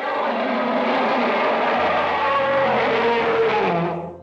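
Elephant trumpeting: a loud, harsh call that starts suddenly, runs on for about four seconds with its pitch dropping near the end, then cuts off.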